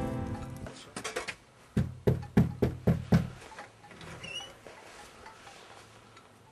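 Knocking on a front door with a fist: a few light taps, then a run of five sharp knocks at about three a second. Quieter handling sounds follow as the door is opened.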